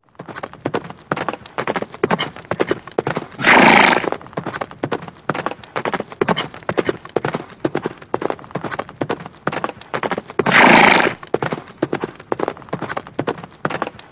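Horse galloping: rapid hoofbeats throughout, with two loud whinnies, one a few seconds in and another about ten seconds in.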